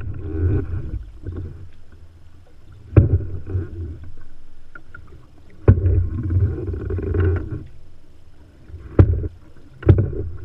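Paddle strokes from an open canoe: four sharp knocks roughly three seconds apart, each followed by the swirl and gurgle of water as the blade pulls through beside the hull.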